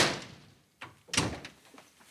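A door shutting with a thump at the start, then another thump a little over a second later.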